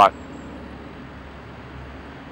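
Steady, even hum of distant road traffic.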